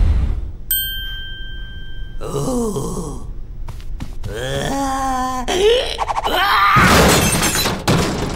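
Cartoon soundtrack of wordless character vocalizing: a thump, a single high ringing note, then groaning, whining voice sounds with a few clicks, rising to a loud outburst near the end.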